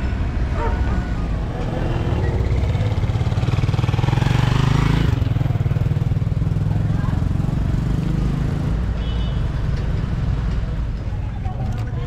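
An engine running with a low, steady rumble. It grows louder from about three seconds in and drops back abruptly just after five seconds.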